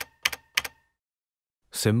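Three typewriter-style keystrokes in quick succession, about a third of a second apart, with a faint ring after them. Near the end a voice says "symbols".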